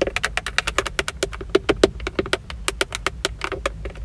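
Long fingernails tapping quickly on a Toyota steering wheel's centre pad and chrome emblem: an uneven run of sharp clicks, about ten a second.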